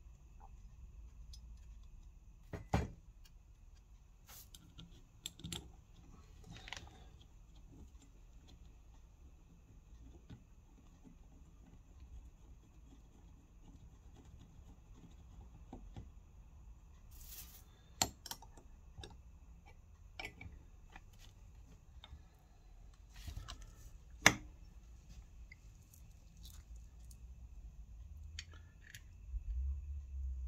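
Scattered metallic clinks and knocks as turbocharger parts and small bolts are handled and set down on a workbench, with a few sharper knocks, the loudest about three seconds in and again late on.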